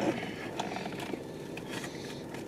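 Low, steady background noise inside a car, with a couple of faint light ticks.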